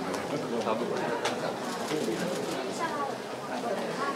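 Several people talking at once, a general chatter of overlapping voices, with a few short sharp clicks about a second in and again around the middle.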